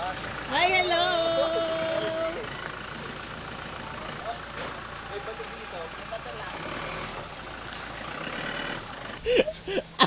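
Car on a rough dirt track, with its running noise steady through most of the stretch. Near the start a loud held pitched sound lasts nearly two seconds, and faint voices are heard.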